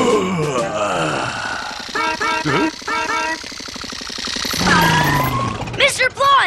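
A cartoon character's stretching yawn, a long falling groan, over background music. A few short repeated notes follow about two seconds in, and another falling vocal sound comes near the end.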